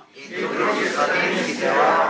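A congregation of many voices speaking a prayer phrase together in unison, the overlapping voices blurring into one dense sound in a large room.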